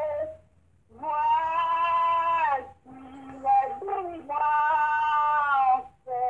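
A high singing voice holding long, slow notes, each lasting one to one and a half seconds with short breaks for breath between.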